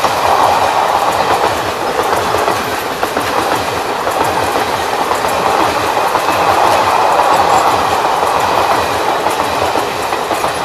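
Indian Railways express passenger coaches passing close by at speed: a loud, steady rumble with a rapid clatter of wheels on the rails.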